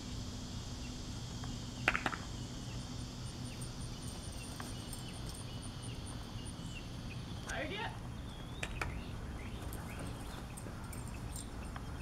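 Steady drone of insects, with a rapid high chirping pulse for several seconds. Two sharp clicks come about two seconds in, and a short call that bends up and down sounds past the middle.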